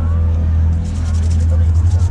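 People's voices over a steady, loud low rumble.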